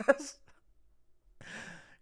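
The tail end of a man's laugh close to the microphone, a brief pause, then a short audible breath, a sigh, just before he speaks again.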